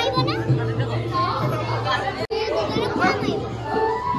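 Bhaona performance heard in the hall: a performer's amplified voice over held notes of musical accompaniment, with children's voices chattering among the audience.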